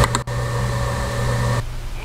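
Steady machine whir with a low hum, which cuts off suddenly about a second and a half in.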